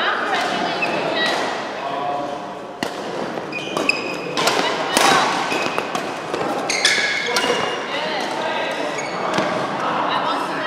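Badminton rally: rackets striking the shuttlecock in a string of sharp smacks, with short high squeaks of court shoes on the mat and voices in the background.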